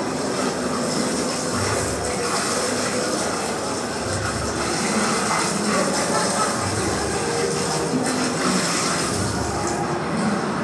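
Garden hose spraying water over a metal kart frame: a steady hiss of spray, with soft low rumbles coming and going.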